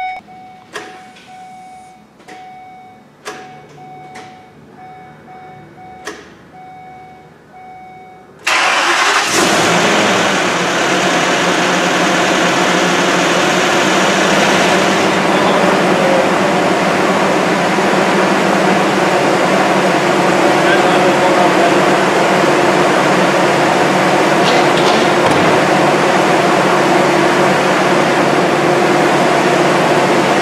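A vehicle warning chime beeps steadily with a few clicks, then about eight seconds in the ambulance's freshly reassembled engine fires, after earlier rounds of cranking to build oil pressure in the dry engine, and settles into steady running.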